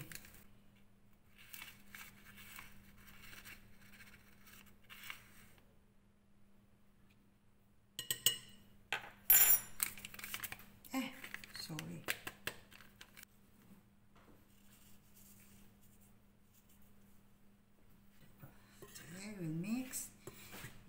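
Soft rustling of a small paper packet of baking powder being handled and opened over a glass mixing bowl, then a quick cluster of sharp clinks of metal on glass about eight to ten seconds in. A faint steady hum runs underneath.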